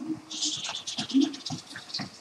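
A heavy woven blanket rustling and scraping as the person draped under it moves about, a continuous scratchy rustle of fabric.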